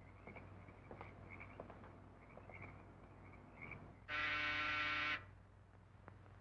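A doorbell buzzer sounds once, a steady pitched buzz lasting about a second, about two-thirds of the way in. Before it there is faint, repeated chirping and a few soft clicks.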